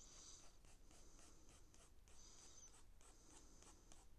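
Faint pencil scratching on paper in short, repeated strokes, several a second, as a circle is traced. One stroke a little past the middle runs longer.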